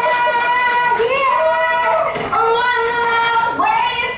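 A high singing voice holding long, drawn-out notes, each about a second long, with short slides in pitch between them.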